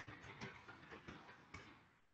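Faint computer keyboard typing: a quick run of key clicks, about five a second, as a short line of text is typed.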